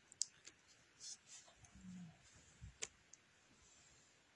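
Near silence with a few faint, sharp clicks, the clearest one just after the start and another near three seconds in.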